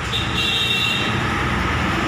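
Street traffic noise, a dense steady rumble of passing vehicles. A high steady tone stands over it and stops about a second in.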